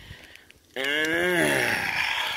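A man's drawn-out, breathy groan, about a second and a half long, rising then falling in pitch, starting just under a second in.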